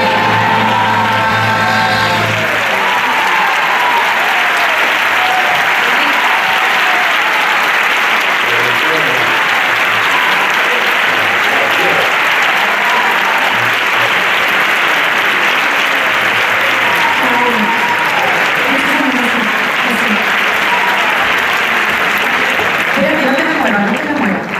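A theatre audience applauding at length after a song. The band's last notes die away about two seconds in, and voices call out over the clapping in the second half.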